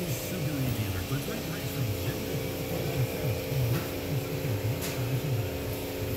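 Indistinct low voices talking, too unclear to make out words, over a steady electrical hum.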